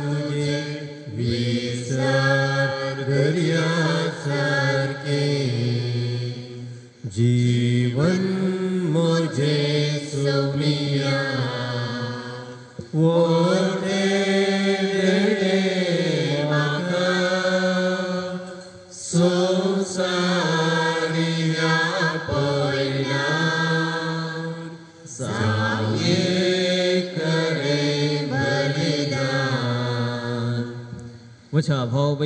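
Slow liturgical singing: a sung hymn or chant in long held phrases of about five to six seconds each, with short breaks between phrases.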